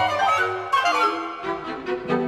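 Contemporary classical chamber ensemble playing dense, overlapping pitched lines with sharp accented attacks. The low bass notes drop away for about a second in the middle and come back near the end.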